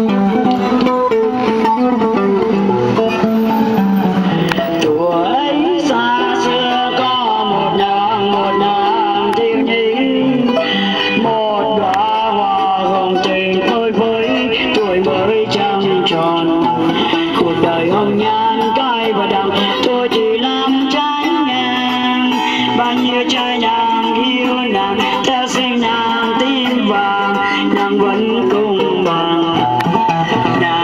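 A woman singing a Vietnamese song into a microphone, accompanied by a man playing guitar, in a live street performance.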